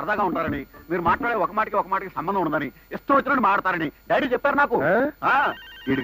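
Film dialogue: men talking, with a mobile phone ringing briefly near the end.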